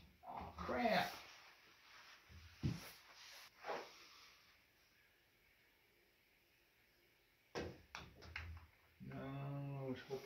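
A pool cue clicks against the white ball and the ball knocks a few times off the table's cushions, with golf balls standing in for pool balls. A man's brief voice comes near the start and again right after the shot, with some lighter knocks earlier on.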